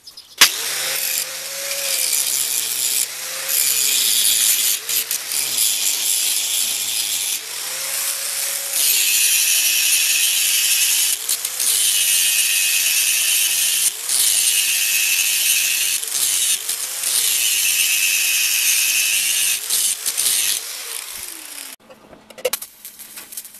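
Angle grinder with a cutting disc cutting through a steel rod. It starts about half a second in and runs loud in several long stretches broken by brief dips, with the motor's whine wavering in pitch, and it stops just before the end.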